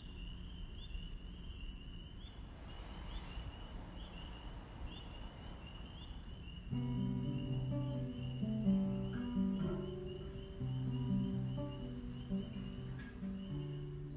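A steady, high chirring of insects. About halfway through, an acoustic guitar starts playing: sustained plucked notes and chords.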